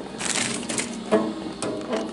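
A short burst of crinkling and rustling handling noise about a quarter-second in, with a few sharp clicks, then a brief voiced sound just after the one-second mark, over a faint steady hum.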